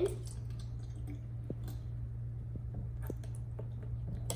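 Water poured from a plastic bottle into plastic cups, a faint trickle and splash with a few light clicks of the bottle, over a steady low hum.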